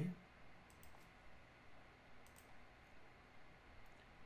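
A few faint computer mouse clicks, in small clusters, over quiet room tone, with the tail of a spoken word at the very start.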